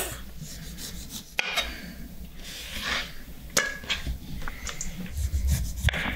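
Chef's knife slicing the skin off a lemon on a wooden chopping board, soft scraping cuts with a few sharp taps of the blade on the board.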